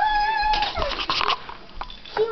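A young child's high-pitched squeal that rises and then holds for about half a second, followed by a cluster of short scuffing noises.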